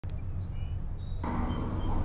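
Outdoor ambience: a steady low rumble with a few faint bird chirps in the first second. About a second in, a louder hiss comes up.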